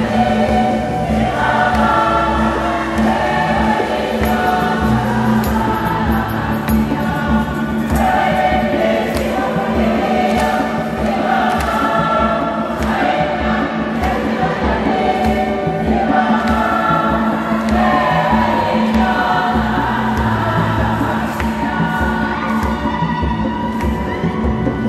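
A women's choir singing a Swahili church hymn in phrases, over a steady low accompanying tone. From about four seconds in, a regular beat runs under the singing.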